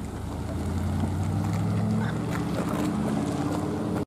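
Fire battalion chief's pickup truck engine pulling away from a stop, its low engine note growing louder about half a second in and then holding steady.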